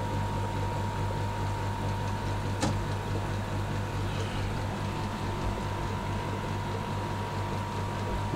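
Steady low hum of aquarium air pumps running the sponge filters and airstones, with a faint constant higher whine above it. One short click about two and a half seconds in.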